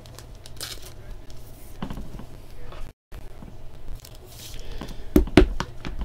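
Trading cards and their paper and plastic packaging being handled: rustling and crinkling, with a few sharp clicks about five seconds in.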